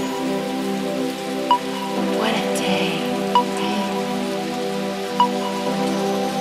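Techno track in a breakdown with no kick drum: a sustained synth chord, a short pitched blip about every two seconds, and a hissing noise sweep in the middle.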